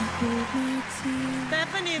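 Soft background music of held chords with a simple melody line over them, and a voice starting to speak about a second and a half in.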